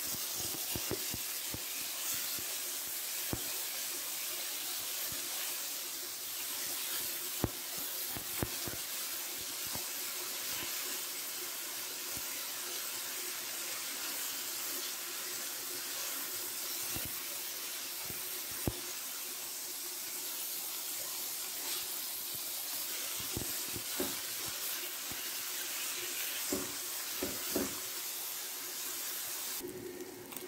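Ground beef sizzling in a non-stick skillet as a steady hiss, with scattered clicks and taps of a utensil breaking up the meat against the pan.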